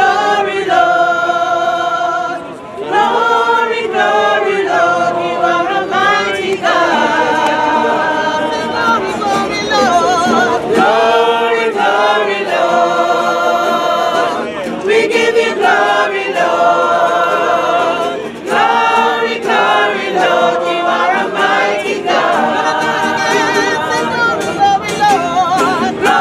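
Small gospel choir singing a Christmas carol in long sustained phrases, with brief breaks between lines.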